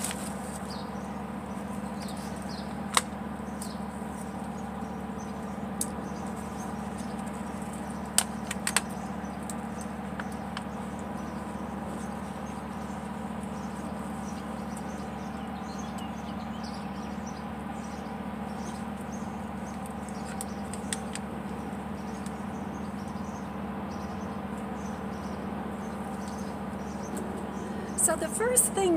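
Steady, even drone of distant powered landscaping machinery, with a few brief clicks about 3 and 8 seconds in.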